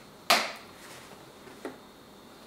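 Football jerseys of synthetic knit fabric being handled on a tabletop: a sudden sharp swish of the cloth about a third of a second in, then a fainter one near the end.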